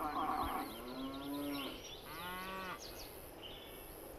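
Cattle mooing: two separate calls, the second lower in pitch.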